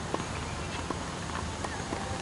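Tennis ball knocks on a hard court, heard from a distance: three sharp pops about three-quarters of a second apart over a steady outdoor hiss.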